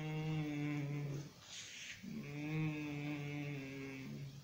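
A man humming two long, level low notes: the first about a second long, the second nearly two seconds, with an audible breath between.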